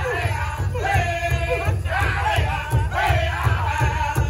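A powwow drum group singing in high, strained voices over a steady, even beat that several drummers strike together on one large hide-headed powwow drum.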